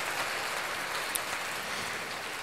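Steady background hiss in a pause between words, with one faint click a little over a second in.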